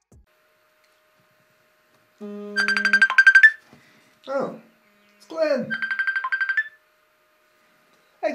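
Telephone ringing on an outgoing call: two trilling rings, each about a second long, with a short low tone before the first and two brief falling voice-like sounds around the second.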